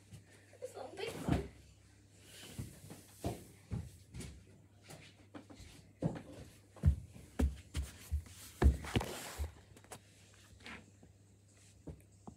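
Irregular soft thumps and knocks close to the microphone, about a dozen, thickest in the second half, with rustling between.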